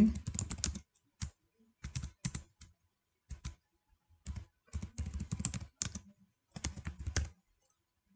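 Computer keyboard typing in short bursts of keystrokes with brief silent pauses between them.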